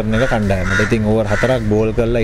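A man speaking Sinhala in continuous conversational speech.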